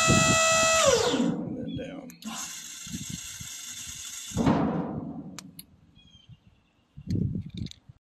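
Electric motor of a dump trailer's hydraulic hoist pump running with a steady high whine, raising the bed, then winding down in pitch about a second in. About two seconds in a steady hiss sets in, the sound of the relief valve opened to let the bed down by gravity. It ends with a thump about four and a half seconds in.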